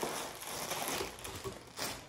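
Clear plastic garment bag crinkling and rustling as a sweatshirt is pulled out of it, with a brief louder crackle near the end.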